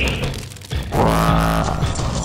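A low, growling voice-like sound lasting just under a second, starting about a second in.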